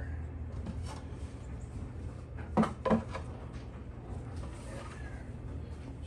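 Two short knocks about a third of a second apart, over a steady low hum.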